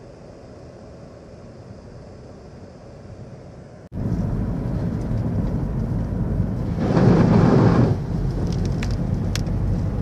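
Car driving, heard from inside: quiet road noise, then after an abrupt cut much louder noise of the car going along a flooded lane, with a louder spell of water spraying under the tyres about seven seconds in and a few clicks near the end.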